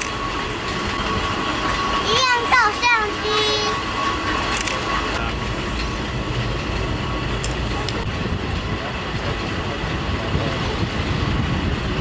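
Steady running noise of a Taiwan Railways blue passenger-coach train, heard from an open coach window. A child's voice breaks in briefly about two seconds in.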